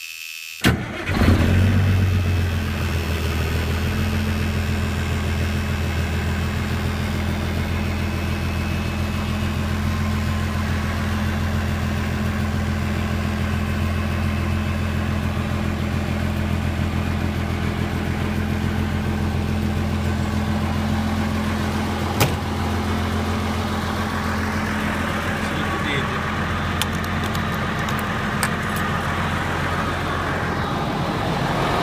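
Volvo White truck's diesel engine cranking briefly and catching about a second in, then idling steadily. A single sharp click a little past twenty seconds in.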